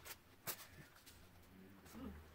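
Near silence: room tone with a few faint clicks, the loudest about half a second in.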